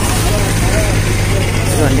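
A bus engine idling with a steady low hum, with people's voices over it.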